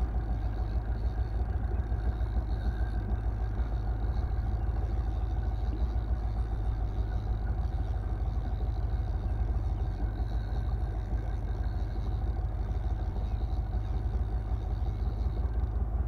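Small boat's outboard motor running steadily at an even speed: a constant low drone with faint steady tones above it.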